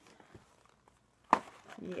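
A single sharp knock of small cardboard candy boxes striking each other, about a second and a half in, as four boxes of LifeSavers Gummies are gathered up. A woman's voice starts just after it.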